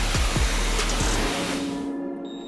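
Pressure-washer wand rinsing a car's windshield: a steady hiss of the water jet striking the glass, dying away shortly before the end.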